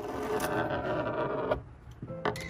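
Lego top spinner launcher: the toothed rack pulled through its gear train, gears whirring as they spin up the top for about a second and a half, then cutting off suddenly.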